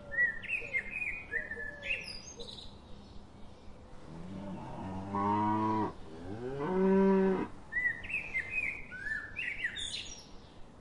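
A cow mooing twice about halfway through: a lower call of about a second and a half, then a shorter, higher one, each rising in pitch and then holding. Small birds chirp before and after the moos.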